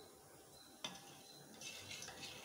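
Steel spoon faintly stirring coconut milk in a small stainless steel pot, with a light tap a little under a second in.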